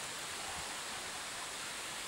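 Steady rush of a shallow river running over stones.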